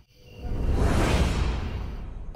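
A whoosh transition sound effect: the sound cuts out at the start, then a rush of noise with a low rumble swells up to about a second in and fades away.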